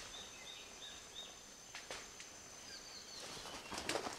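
Forest bird calling in a quick series of short high notes, about three a second, that stops about a second in, over a steady high thin tone. Leaves rustle and crackle near the end.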